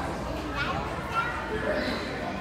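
Indistinct background chatter of several children's and adults' voices in a large room, with no clear words.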